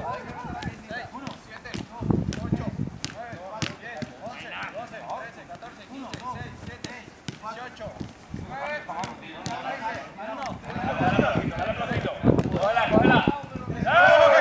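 A football kicked back and forth in a quick passing drill: a string of short, sharp thuds at irregular intervals, with players shouting and calling out over them, the voices louder near the end.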